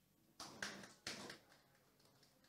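Near silence with room tone and three faint short clicks within the first second and a half.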